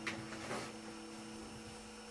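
A faint, steady low hum of a few constant tones, with two brief rustles in the first half-second.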